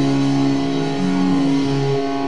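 Heavy, distorted electric guitar and bass from a live doom rock band holding long sustained notes, with the low bass note changing pitch about a second in and again near the end.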